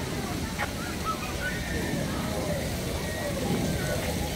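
Background voices and distant chatter of people around a busy outdoor pool, over a steady low rumble.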